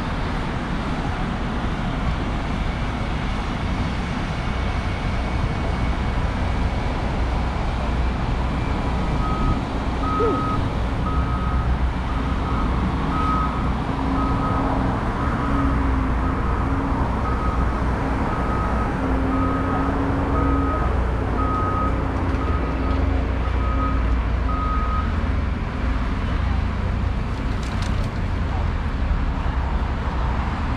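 Steady road traffic noise, with a construction vehicle's reversing alarm beeping evenly, about one and a half beeps a second, from about nine seconds in until about twenty-five seconds in.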